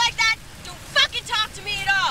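Raised, high-pitched voices shouting in short bursts in a spoken skit, over a faint steady low hum.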